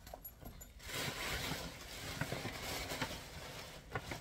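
Tissue paper rustling as it is handled, with a few light taps.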